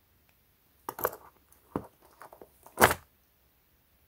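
Handling noise from a loose, thin glass screen protector and the watch being moved in the fingers: a few short clicks and rustles over about two seconds, the loudest near the end.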